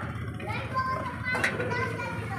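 Background voices, children's among them, talking over a steady low hum.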